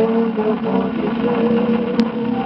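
A 78 rpm shellac record of a 1940 samba-canção playing: the duo's sung line ends on 'do céu' and the regional band's accompaniment carries on. There is a sharp click at the very end.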